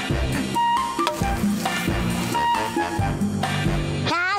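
Background music: a melody over bass notes with a light, regular beat.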